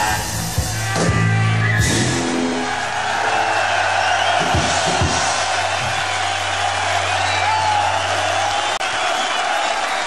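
A live rock band playing the last chords of a song, which die away about two to three seconds in; then the crowd cheers and whistles over a held low tone from the stage that stops shortly before the end.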